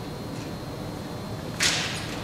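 Quiet room tone broken by one short, sharp swish about one and a half seconds in.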